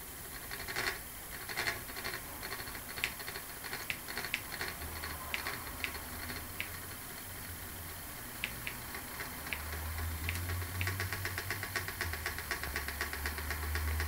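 Reed-switch pulse motor running, its magnet rotor giving a low hum that comes in about five seconds in and grows louder near ten seconds, over scattered ticks that become a fast stream of clicks near the end. The motor is speeding up as its coil is pushed in closer, drawing less current as it goes faster.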